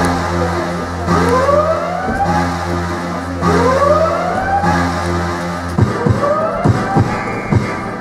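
Pop dance music: rising, siren-like sweeping tones repeat about every second and a quarter over a held bass note, then near six seconds in the bass drops away and sharp percussive hits take over.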